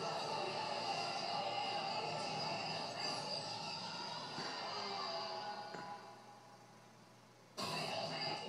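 Background music from a TV programme heard through the television's speaker. It fades away over the last few seconds, and then the sound cuts back in abruptly just before the end.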